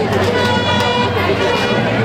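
A horn sounds one steady note for about a second and a half.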